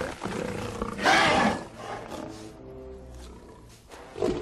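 Giant cockroach-like alien monster roaring, loudest about a second in and then dying away, over steady film music.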